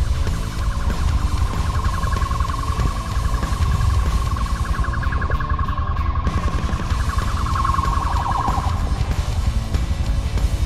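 Police car siren sounding a steady, rapidly pulsing high tone that stops about nine seconds in, over loud heavy-metal music with guitar and drums.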